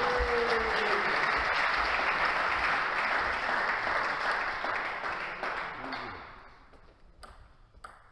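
Applause from a small crowd of spectators in a hall after a table tennis point, steady for about five seconds and then dying away. Two sharp taps follow near the end.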